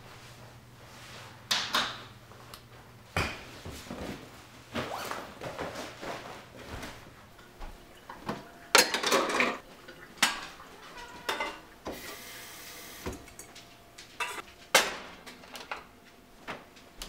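Kitchen handling noises: a string of knocks, clanks and scrapes as a stainless steel kettle is handled and set on an electric coil stove. The busiest clatter comes about nine seconds in, and a short hiss follows a few seconds later.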